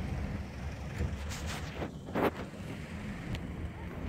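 Steady low rumble of city road traffic with wind buffeting the microphone, and two short scuffing noises about a second and two seconds in.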